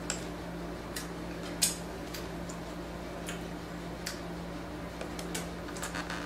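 A child's eating noises while she eats a burger and fries: scattered short lip smacks and chewing clicks, the sharpest about a second and a half in, over a steady low hum.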